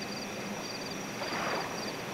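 Crickets chirping in short pulsed trills about twice a second, over a low steady hum.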